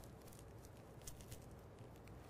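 Near silence: room tone with a few faint, soft crackling ticks, loudest about a second in.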